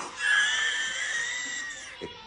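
A child's long, high-pitched squeal, held for most of two seconds and fading away near the end.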